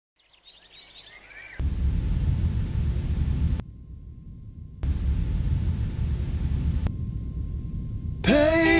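Sound-effect lead-in before a rock track: a few brief high chirps, then two spells of loud, deep rumbling noise that each start and cut off abruptly, with a faint steady tone in the quieter gap between them.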